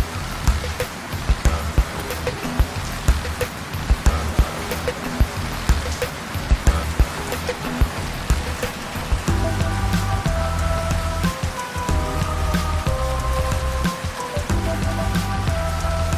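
Heavy rain falling, a dense hiss with many sharp drop hits, under background music with a bass pulse. The music becomes more melodic, with clear sustained notes, about nine seconds in.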